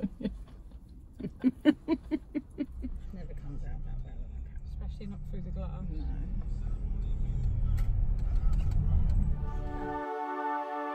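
Women's voices and quick laughter for the first few seconds. Then a low rumble that swells steadily louder for several seconds and stops abruptly as music begins.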